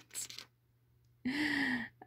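A woman's breathy exhales as her laughter trails off, a short pause, then a brief voiced sigh held on one steady pitch.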